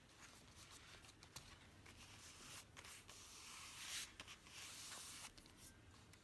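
Faint rustle of a hand pressing and rubbing a glued paper panel flat onto a journal page, a little stronger about halfway through, with a few light taps.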